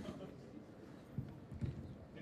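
Handling noise from a clip-on microphone being fitted: a few soft low knocks and rubs, the clearest a little after a second in.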